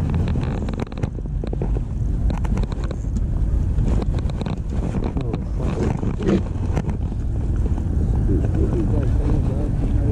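Wind rumbling on the microphone, with scattered short knocks and rattles as a landing net's handle is worked in by hand.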